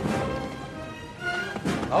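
Background music with sustained tones, fading over the first second and picking up again near the end.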